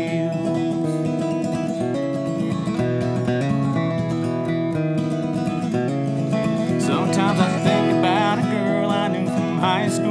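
Acoustic guitar strummed in a steady country rhythm, changing chords through an instrumental passage between sung lines. A higher, wavering melody line joins about seven seconds in.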